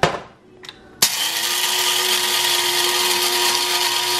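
Krups electric blade coffee grinder grinding coffee beans: it starts abruptly about a second in and runs for about three seconds as a loud, steady whir with a steady hum.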